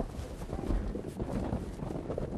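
Wind rumbling on the microphone, with irregular soft footsteps through snow.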